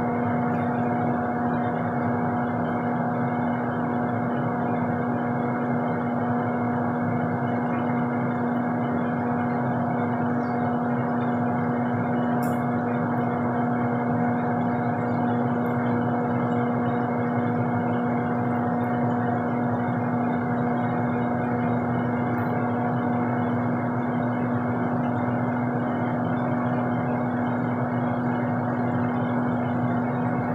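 A steady hum at one constant pitch over a soft hiss, like a running motor or fan, with a faint click about halfway through.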